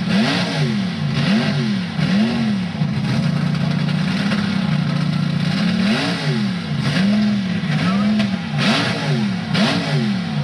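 Built-up mud-bog pickup's engine revved hard again and again, its pitch climbing and falling about once a second, with a steadier held stretch in the middle, as the truck works through the mud pit.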